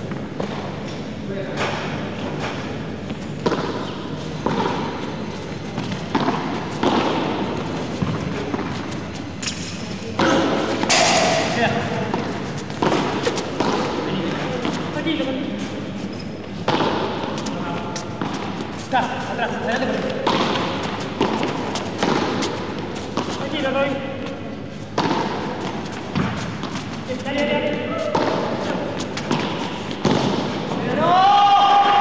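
Padel ball thudding in irregular single knocks, echoing in a large hall: bounces and strikes of solid padel paddles, with people's voices in between.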